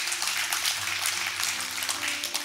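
Congregation applauding, a steady patter of many hands.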